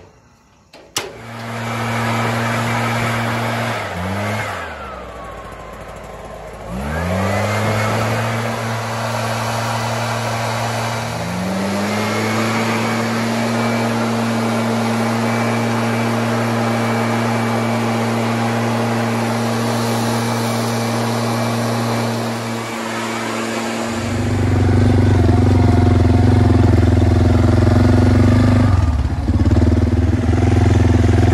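A few metal clanks, then a backpack leaf blower running at a steady high pitch. Its throttle is eased off and run back up a couple of times in the first dozen seconds. About 24 s in a louder, deeper engine takes over, an ATV running.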